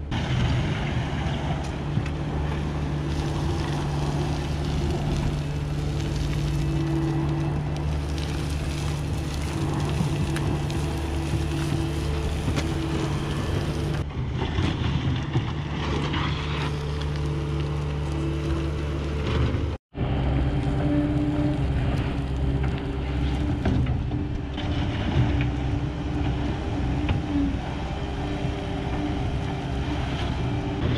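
Kubota skid steer loader's diesel engine running steadily under load while backfilling a trench, with dirt and stone dust spilling from the bucket.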